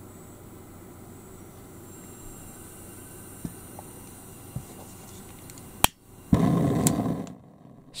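Gas hissing steadily out of a propane burner fed from a cassette gas can through a hose, the hose being purged before lighting. About six seconds in there is a sharp click, then the burner lights with a loud rush lasting about a second.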